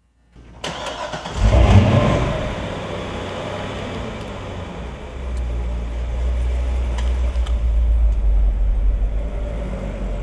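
2009 Corvette ZR1's LS9 supercharged 6.2-litre V8 starting: a brief crank, the engine catches with a loud rev flare about a second and a half in, then it settles into a steady, low idle.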